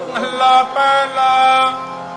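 Harmonium playing a short phrase of a few held reed notes, each steady in pitch, during Sikh kirtan. The phrase softens near the end.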